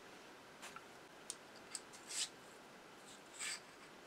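Faint handling noises from a small motor armature and its shaft bushing: a few light clicks and two short scrapes, the one about two seconds in the loudest.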